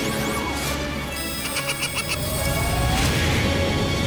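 Cartoon magic-attack sound effects with a crash and a rising sweep, over dramatic background music.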